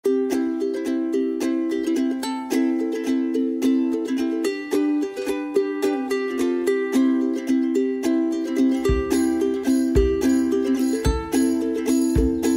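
Background music: a bright plucked-string tune with quick notes, joined by a low kick-drum beat about nine seconds in.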